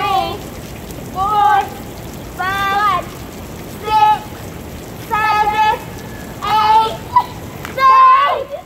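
Steady rain-like hiss of a sprinkler's water jet spraying onto the girls and the pavement. Over it, a child counts aloud, one high-pitched number about every second and a quarter.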